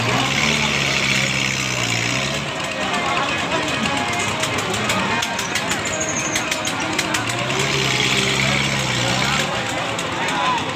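A fairground swinging-ship ride in motion, its machinery giving a pitched mechanical hum that swells twice, several seconds apart, over the noise of a crowd.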